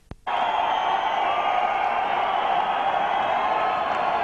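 Large arena crowd cheering, shouting and whistling without pause. It cuts in abruptly about a quarter second in, after a moment of near silence and a sharp click, a dropout in the recording.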